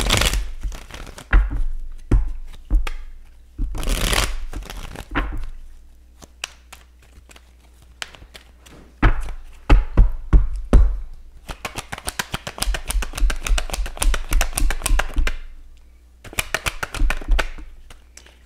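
A tarot deck being shuffled and handled by hand: scattered slaps and taps of cards, then a fast run of card snaps lasting a few seconds in the middle, and more short flurries near the end.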